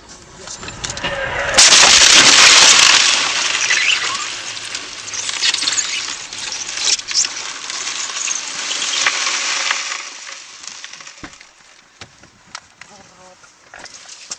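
Car collision heard from inside the car: a loud crash about a second and a half in, followed by several seconds of crunching and breaking noise, then a few scattered knocks and clinks as it settles.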